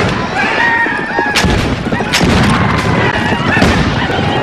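Film battle sound: gunshots, several sharp reports roughly a second apart, over dense rumbling action noise and voices crying out.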